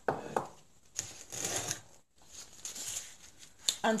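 Gloved hands picking up and handling a jar of chicken bouillon: rustling, with a few light knocks and clicks.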